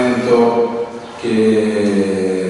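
A man's voice speaking slowly in a drawn-out monotone, each sound held for about half a second, with a short break about a second in.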